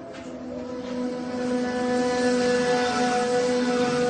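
Dramatic background music: one sustained droning chord that swells up over about the first two seconds and then holds steady.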